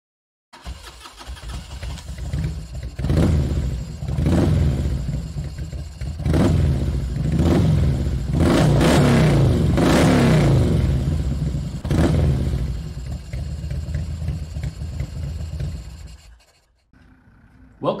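Motorcycle engine running and revved in a series of throttle blips, with one longer rev in the middle, then fading away.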